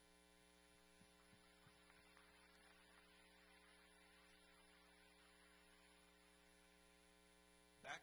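Near silence with a steady electrical mains hum in the sound system.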